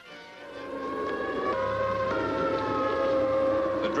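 Chrysler air raid siren sounding a civil defense alert. Its wail swells up over the first second and a half, then holds as a loud, steady, multi-toned howl.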